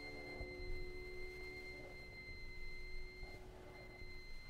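The last chord of a piano trio (piano, violin and cello) ringing and fading away at the close of the slow first movement, one low note lingering until near the end. A faint steady high-pitched whine from the old recording runs underneath.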